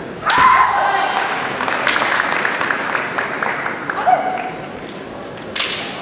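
Kendo fencers' kiai shouts with bamboo shinai clacking and striking: a sharp strike and shout about a third of a second in, a patter of light clacks and another strike around two seconds, a shorter shout near four seconds, and a crack near the end.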